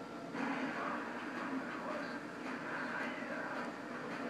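Chihuahua growling steadily in a low rumble at a tennis ball held up to its face, the growl swelling about a third of a second in.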